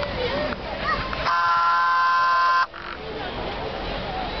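A steam locomotive's whistle gives one steady blast of about a second and a half, several notes sounding together, then cuts off sharply. A crowd talks throughout.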